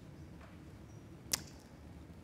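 Quiet room tone broken by a single short, sharp click a little past halfway.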